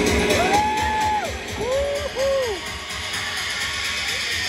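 Electronic dance music from a DJ set over a sound system, with the deep bass thinned out. Over it come a few rising-and-falling gliding tones: one longer one, then two short ones in quick succession. The music drops in level about a second and a half in.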